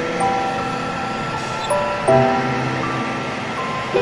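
Background music of held, sustained notes that change to new chords about every one to two seconds.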